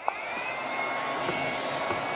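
Dykemann Clear S-46 IPL photoepilator switching on: its internal cooling fan spins up with a brief rising whine, then runs steadily with a whoosh like a hair dryer.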